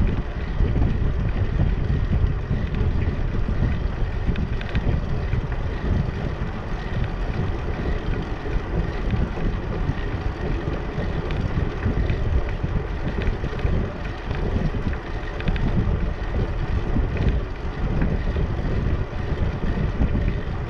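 Wind buffeting the microphone of a camera on a moving bicycle, a steady gusty rumble, with the bike's tyres rolling over the concrete deck beneath it.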